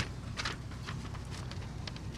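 Sheets of paper rustling and crinkling in a few short bursts as they are pulled down from a car's sun visor and unfolded, over a steady low hum.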